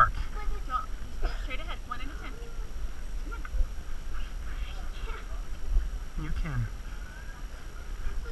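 Indistinct voices of people talking at a distance, no clear words, over a steady low rumble on the microphone.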